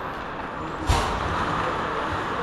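Steady noise of ice hockey play in a rink, with one sharp crack about a second in.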